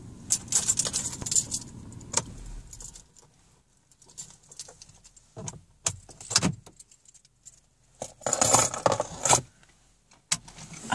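Keys jingling inside a slowly moving car, in three bouts of jangling with quieter gaps between them.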